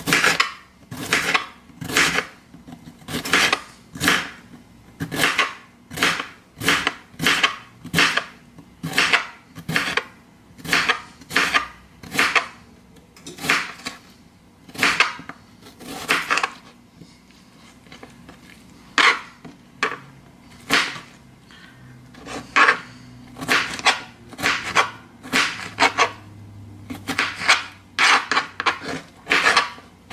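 Kitchen knife slicing a peeled cucumber into rounds on a plastic cutting board. Each cut ends in a sharp tap of the blade on the board, about one to two cuts a second, with a brief pause a little past the middle.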